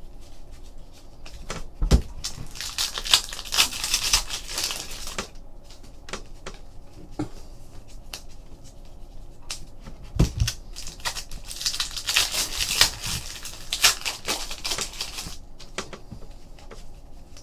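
2014-15 Panini Threads basketball trading cards being flipped through by hand: quick clicks as the cards flick and slide against one another. There are two longer stretches of rustling, one a few seconds in and one about twelve seconds in.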